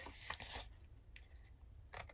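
Small craft scissors snipping a wedge off a cardstock tab: a few faint, short snips.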